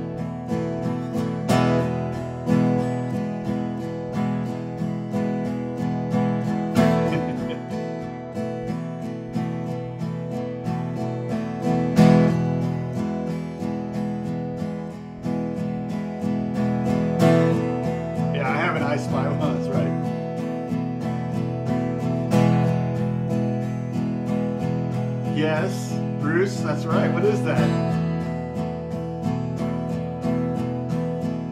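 Acoustic guitar strummed in a steady, fast sixteenth-note pattern on one held chord, with certain strokes accented so they stand out louder than the rest.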